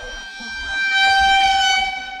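A single sustained horn-like note, steady in pitch with bright overtones, swelling in over the first second and then holding loud; an added gag sound effect rather than a sound from the scene.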